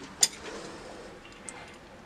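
A single sharp click about a quarter of a second in, then a faint tick about a second later, over quiet room tone.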